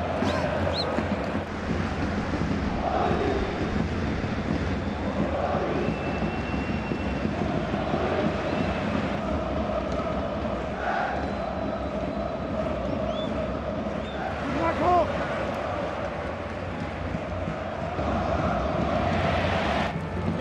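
Stadium crowd noise from a large football crowd: a steady mass of chanting and shouting, with a brief louder peak about three-quarters of the way through.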